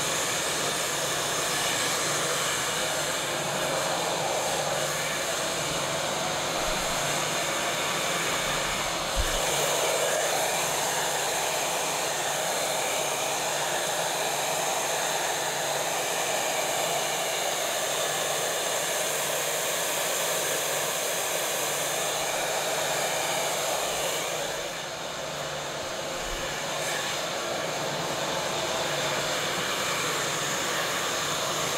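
Handheld hair dryer blowing steadily on a man's hair, its air noise dipping briefly in level near the end.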